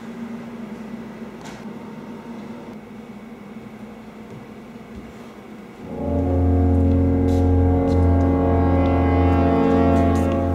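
Quiet room tone with a faint hum, then about six seconds in a loud, low, horn-like tone with many overtones starts suddenly and holds steady.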